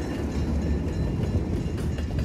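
Passenger cars of the Napa Valley Wine Train rolling past: a steady low rumble of wheels on the rails, with a few faint clicks.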